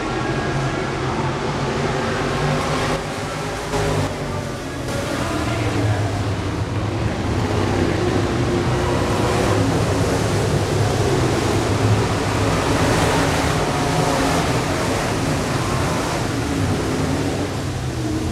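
Several IMCA Modified race cars' V8 engines running around the track, a loud steady din whose pitch wavers up and down as the cars pass.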